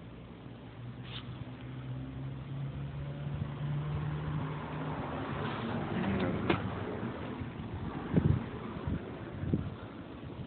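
A motor vehicle's engine hum building and then fading, as of a vehicle going by, followed by a few sharp knocks near the end.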